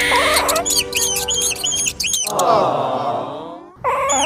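Rapid high-pitched squeaks, about four a second, like tiny sped-up cartoon voices, followed by a long falling, wavering groan that fades out shortly before the end.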